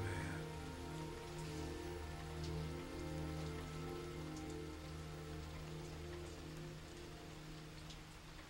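Steady rain on a surface, heard under soft, sustained low notes of a film score; both grow a little quieter toward the end.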